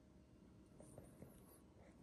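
Near silence: faint room tone, with a few faint small ticks about a second in.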